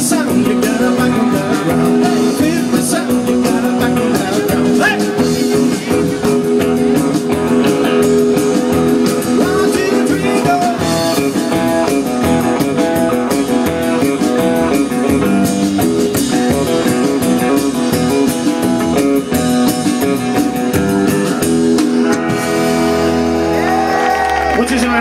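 Live rockabilly band playing loudly: electric guitar, upright double bass and drums.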